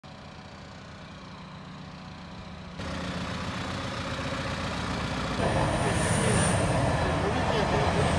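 Diesel engines of parked emergency vehicles idling with a steady low hum; from a little past halfway, people's voices rise over it.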